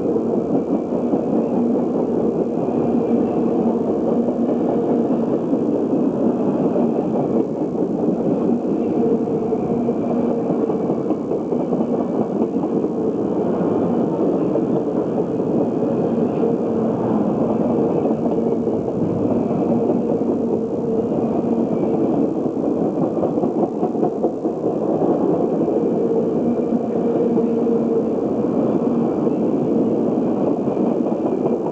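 Circus train passenger cars rolling past: a steady, unbroken rumble of steel wheels on the rails.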